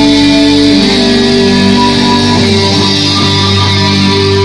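Live rock band playing loudly, led by electric guitar holding long ringing notes.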